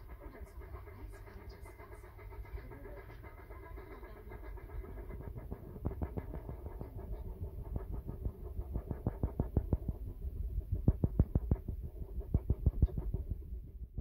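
Steam locomotive working hard: a low rumble, then a quick, even run of exhaust chuffs, about four a second, growing louder over the second half and cutting off suddenly at the end.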